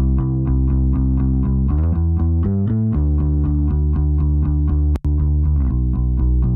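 A bass line of steady, evenly repeated notes playing back from a DAW, coloured by an analog hardware chain: a Tegeler VTRC tube channel, a Warm Audio 2MPX preamp and a Stam Audio EQP-1A equalizer. About five seconds in it cuts out for an instant and carries on with the analog processing bypassed, thinner at the top.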